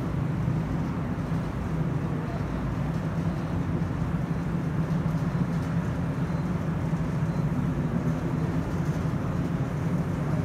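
Steady low hum of background room noise, unchanging, with no distinct events.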